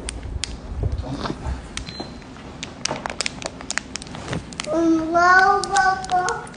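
Scattered light clicks and taps, then about five seconds in a young child's high, drawn-out vocalizing that wavers slightly in pitch.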